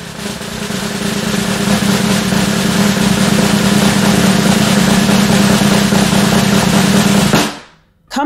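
A snare drum roll sound effect, building up over the first second or so, then held steady until it stops about half a second before the end.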